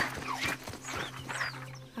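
Light running footsteps and a few short, high chirps that dip in pitch, over a low sustained music note that sets in at the start and holds steady.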